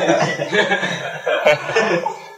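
Laughter and chuckling, mixed with speech.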